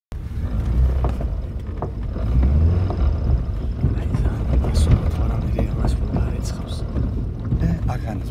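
Mitsubishi Pajero iO engine working under load on a hill climb, heard from inside the cabin as a steady low rumble. A few sharp knocks and rattles come from the body as it goes over rough ground.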